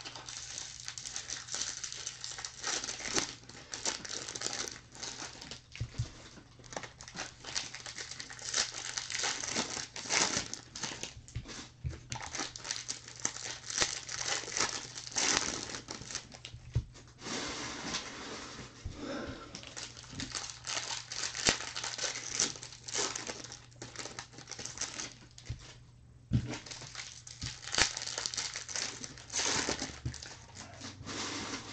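Clear plastic shrink wrap being torn off and crumpled from boxes of trading cards, crinkling continuously with scattered sharp crackles and a few knocks as the boxes are handled. A faint steady hum runs underneath.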